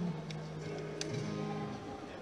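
Quiet lull in live band music: a few faint low held notes that shift pitch twice, with a few small clicks.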